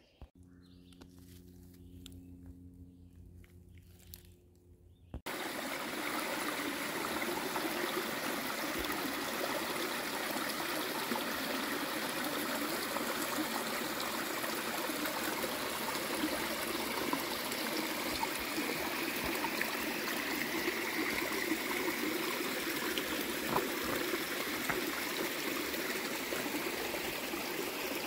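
Spring water trickling and running among rocks, a steady rush that starts suddenly about five seconds in after a few seconds of near quiet with a faint hum.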